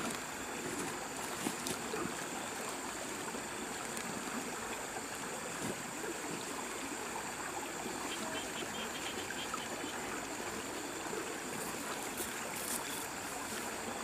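A steady outdoor background hiss with a constant thin high whine above it, and faint rustles and crinkles as dry pulled weeds are gathered up in a plastic sheet.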